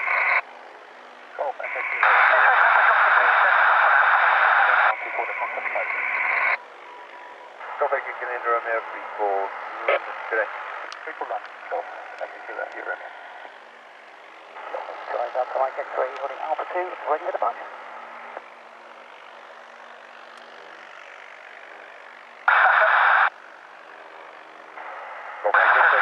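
Air traffic control radio on an airband scanner: loud bursts of squelch hiss, one lasting about three seconds a couple of seconds in and shorter ones near the end, with garbled, crackly voice transmissions in between.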